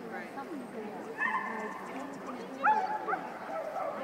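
A dog barking twice, once a little over a second in and again just under three seconds in, the second bark the louder, over distant voices.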